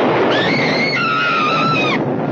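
A woman screaming: two long high-pitched cries, the second lower than the first, over loud, dense noise that cuts off at the end.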